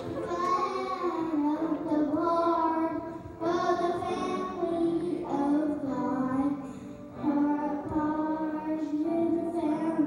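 A young boy singing a gospel song solo, in sung phrases with short breaks between them about three and seven seconds in.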